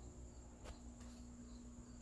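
Near silence: room tone with a faint steady hum and a faint high whine, and one soft click about two-thirds of a second in.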